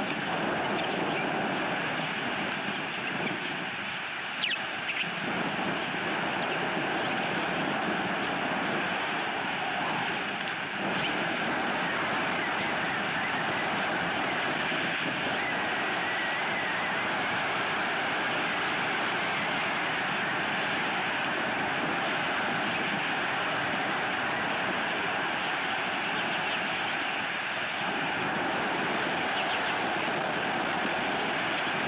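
Steady rushing outdoor background noise picked up by the nest camera's microphone, with a few faint high chirps.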